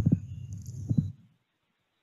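A few dull low thumps over a low rumble, then the sound cuts off abruptly to silence just over a second in.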